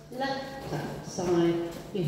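A woman's voice speaking, words the recogniser did not write down.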